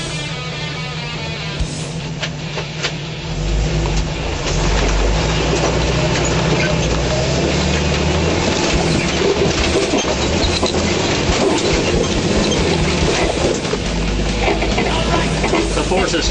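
Off-road Jeep's engine pulling hard under load, jumping louder about three and a half seconds in and staying loud, with background music playing over it.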